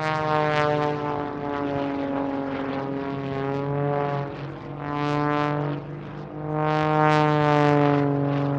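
Propeller airplane engine drone used as a segment-break sound effect, rich in harmonics, its pitch drifting slowly as it swells and fades three times.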